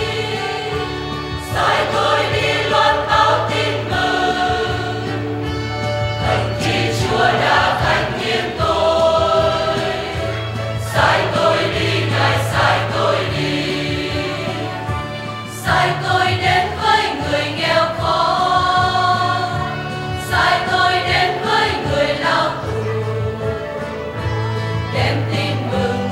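Choir singing a Christian hymn over instrumental accompaniment with a steady bass line, in phrases a few seconds long.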